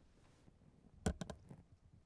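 Handling noise from a small flexible tripod's legs being squeezed in the hand: a quick run of three or four small clicks about a second in, against near silence.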